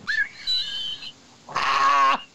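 A man laughing hard: a thin, high-pitched laugh for the first second, then a fuller burst of laughter from about a second and a half in.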